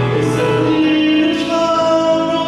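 A man singing into a handheld microphone over recorded backing music, amplified through a PA, holding notes and moving between them.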